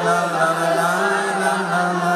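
Live music: a man's voice sings one long, steady held note over instrumental accompaniment.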